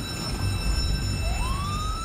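A fire truck's engine rumbles as it pulls out, and its siren starts up about a second in, its pitch winding up and then holding steady.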